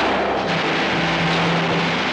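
Battle sound effects from a 1950s war-film soundtrack, a continuous din of gunfire and explosions, mixed with dramatic orchestral score that holds a low note from about half a second in.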